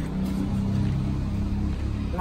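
A steady low engine hum with several held low tones, fading out near the end.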